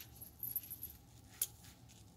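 Soft handling sounds of craft materials and a small glue bottle being picked up: light rustling and one sharp click about one and a half seconds in.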